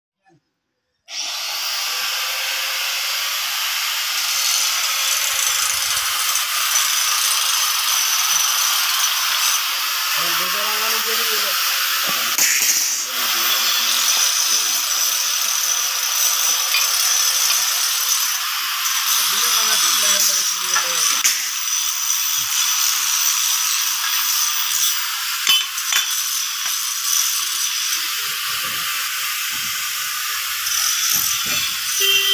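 Loud, steady hissing noise of metalwork on a power tiller trolley chassis, starting suddenly about a second in, with faint voices twice in the background.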